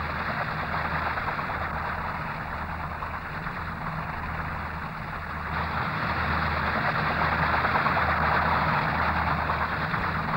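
Fairey Rotodyne hovering low, its tip-jet-driven rotor and two Napier Eland turboprops running: a steady, loud rushing engine noise over a low hum. It grows louder about halfway through.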